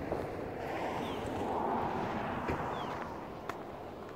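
Wind buffeting a handheld phone's microphone, swelling about a second in and easing off, with a few faint short high chirps and a couple of light handling clicks.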